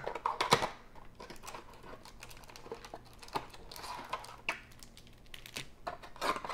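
Cardboard trading-card hanger box being handled and opened and its plastic-wrapped card pack pulled out: a run of small clicks, taps and crinkles, the sharpest about half a second in.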